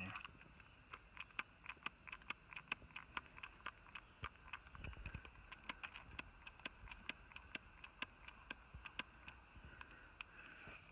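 Faint, irregular ticking and crackling, a few clicks a second, from leak-detector bubbles foaming on a leaking joint of a heat pump's reversing valve, where nitrogen is escaping. A steady high insect-like drone runs underneath.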